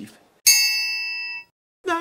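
A single bright, metallic, bell-like ding. It strikes about half a second in, rings for about a second and is cut off abruptly, leaving dead silence.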